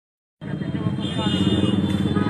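Indistinct voices over a steady low rumble, starting suddenly after a brief silence.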